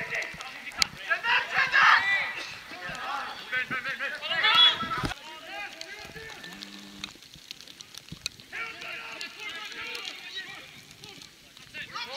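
Football players shouting to each other across the pitch, calls that cannot be made out, in several bursts. A few sharp thuds of the ball being kicked come between the calls.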